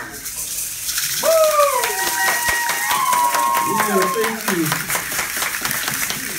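Hand rattles shaking in quick, repeated strokes. About a second in, a long high held tone starts, glides down, holds steady for a couple of seconds and then stops, with a few spoken sounds after it.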